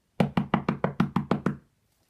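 Rapid knocking: about ten quick knocks in a second and a half, each with a short low ring. It is the knock at the door from the story being acted out.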